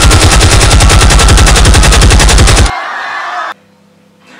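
Machine-gun fire sound effect: a loud, rapid, even rattle of about thirteen shots a second that stops abruptly nearly three seconds in, over a quieter background layer that carries on for about another second.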